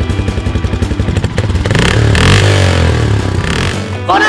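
Custom motorcycle engine idling with a rapid, even putter, then revving up with a rising pitch about two seconds in as the bike pulls away.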